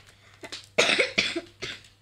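A person coughing several times in quick succession, the loudest cough just before a second in.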